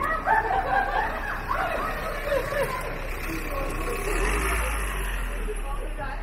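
Passersby talking loudly close by on a pedestrian street, with a low rumble coming in about four seconds in.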